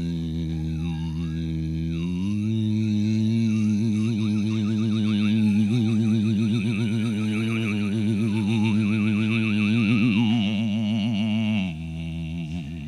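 A low, steady drone held on one pitch, stepping up to a higher note about two seconds in. Its tone colour slowly sweeps and wavers throughout, and it stops shortly before the end.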